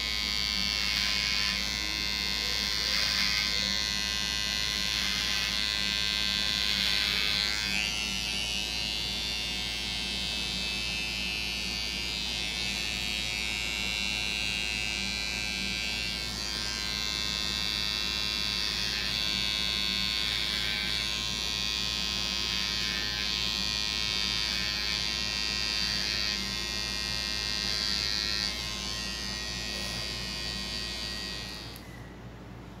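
Electric hair clipper running with a steady buzz while trimming short hair around the ear and nape. The upper edge of the buzz swells and fades now and then as the blade moves through the hair.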